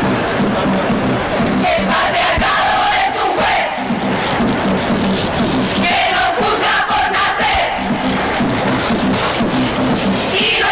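A large crowd chanting together in unison, taking turns with a regular low beat about every two seconds, played back from a video over the room's speakers.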